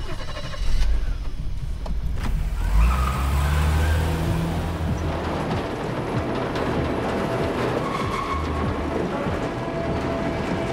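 A vehicle engine's low, steady rumble, which swells about three seconds in, under a film score.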